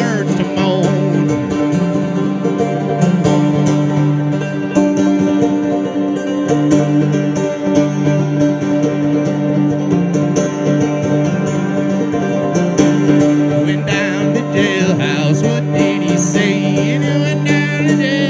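Old-time banjo played through a PA, a steady plucked tune over sustained drone notes. A voice sings over it about two-thirds of the way in.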